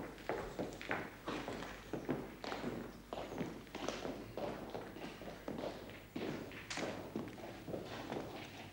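Footsteps of several people walking on hard ground, an irregular run of short steps, a few a second.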